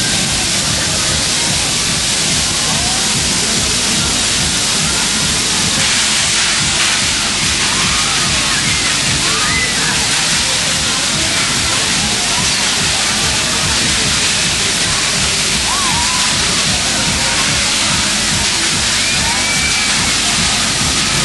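Loud, steady fairground din at a spinning ride: a constant rushing noise with music and voices mixed in, and short high shrieks scattered through it.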